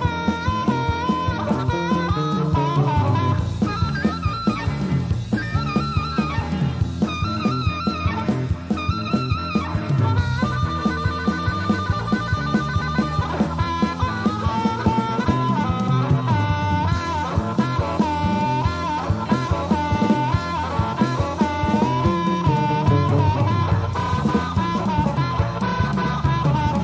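Electric blues band of harmonica, electric guitar, bass and drums playing an instrumental break over a steady beat. A lead line bends up and down in short phrases, with a rapid warbling trill for about three seconds in the middle.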